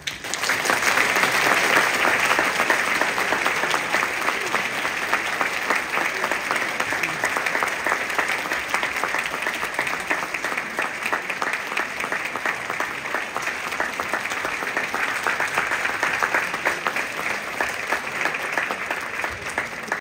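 Audience applauding a string orchestra's finished piece: the clapping breaks out right as the final chord dies away, is loudest in the first few seconds, and then holds steady.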